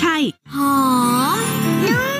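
Television advertisement soundtrack: a woman's last spoken word, then a short break of silence at the cut between ads. The next ad opens with music and a long sliding, drawn-out voice.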